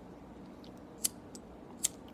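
Faint steady room tone with a few short, sharp clicks, the two loudest about a second in and just before the end.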